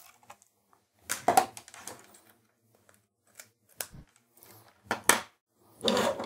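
Scattered light clicks and rustles of a USB mouse and its cable being handled and its plug pushed into a Raspberry Pi 3's USB port.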